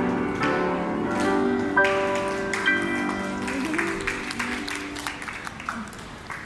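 Grand piano playing the closing phrases of a piece, the last notes ringing and fading away. Scattered hand-clapping follows in the second half.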